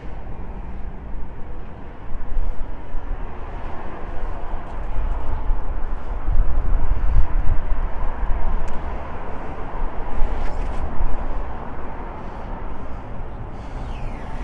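Wind buffeting the microphone: an uneven, gusting rumble that swells louder through the middle, with a few faint clicks.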